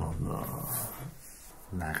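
A man's low, drawn-out voice sound trailing into a breathy exhale during a conversation, followed by a brief lull; speech picks up again near the end.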